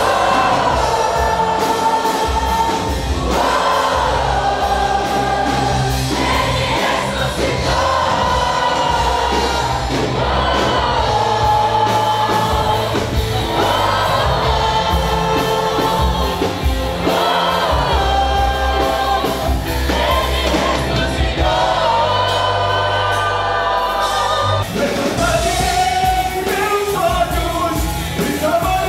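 A large congregation singing a gospel worship song together in long, held phrases, over band accompaniment with a steady bass.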